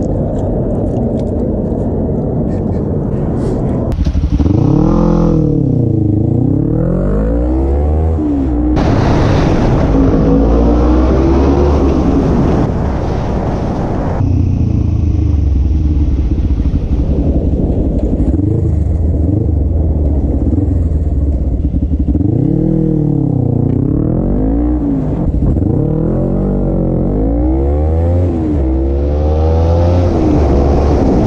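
Motorcycle engine pulling through city traffic, its revs climbing and dropping several times as it accelerates and shifts, over wind rush from riding. In the first few seconds there is only street traffic noise.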